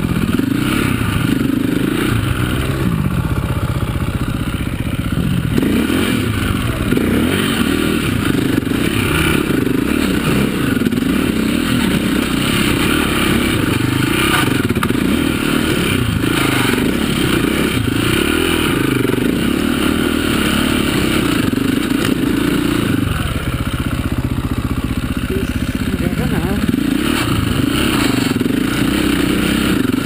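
Enduro dirt bike engine running under load on a rocky uphill trail, its revs rising and falling continuously as the rider works the throttle.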